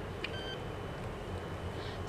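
A short, faint electronic beep about a quarter of a second in, over a low steady hum.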